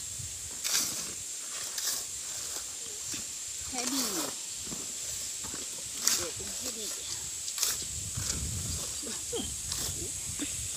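Steel shovels scraping and turning wet cement mix on bare ground by hand, a sharp scrape every second or two.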